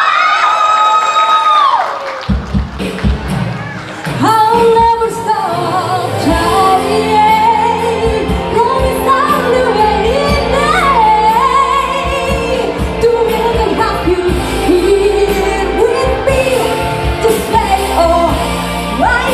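A young woman singing a pop song live into a microphone over backing music through a PA. She holds a long note that ends about two seconds in, the music dips briefly, and she comes back in singing about four seconds in.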